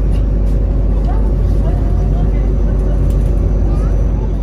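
Bus interior noise heard from inside the cabin: the engine and tyres on the road make a steady low rumble.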